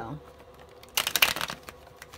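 A tarot deck being riffle-shuffled by hand. The card edges flick together in one quick, rapid burst about a second in, lasting about half a second.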